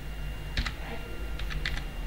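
Computer keyboard being typed on: a few quick keystrokes in two short clusters, about half a second in and again past the middle.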